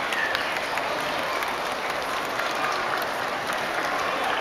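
A large seated audience applauding steadily, a dense wash of many hands clapping.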